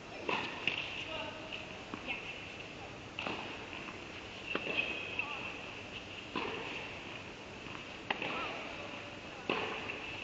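Tennis balls being struck and bouncing in an indoor tennis hall: sharp pops every second or two, each with a short echo off the hall. Brief players' calls and voices sound between the pops, over a steady high hum.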